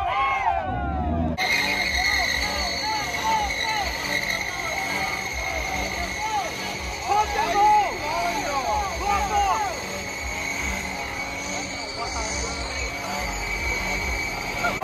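Chevrolet Silverado pickup doing a burnout, its rear tyres squealing in a steady high tone, mixed with crowd voices and music with a regular beat.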